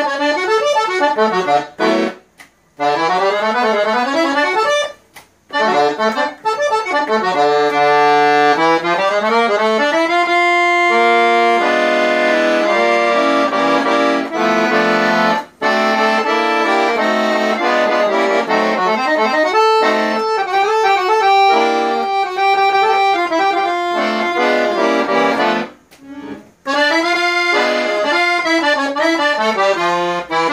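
Valentini Professional Casotto piano accordion, a model with a tone chamber (casotto), played solo: quick rising and falling runs and held chords, broken by a few brief stops.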